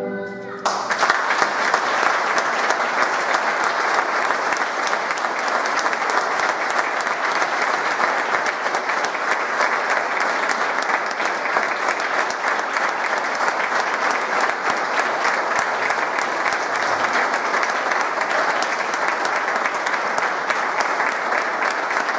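A concert band's held final chord cuts off about half a second in, followed by sustained audience applause at an even level.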